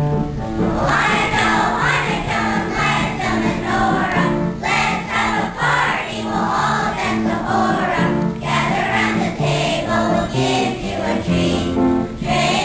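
Children's choir singing with instrumental accompaniment. The voices come in about a second in, over an accompaniment that had been playing alone.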